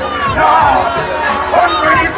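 Loud live reggae music over an outdoor sound system, mixed with a dense crowd's shouting and voices, recorded close on a phone.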